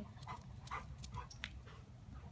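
A yellow Labrador retriever panting faintly as it runs, a few short breaths scattered through.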